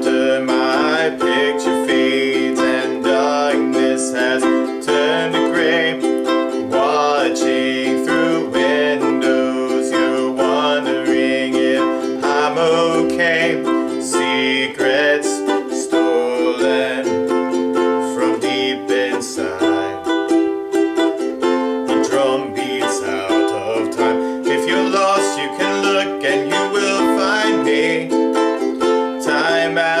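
Ukulele strumming a steady rhythm of chords in C major (F, C, G, Em) for the verse and pre-chorus of a pop ballad. Under it runs a backing track with low bass notes that change with the chords.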